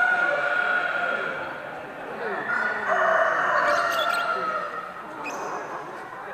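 Roosters crowing: two long, held calls, the second starting about two seconds in and lasting longer.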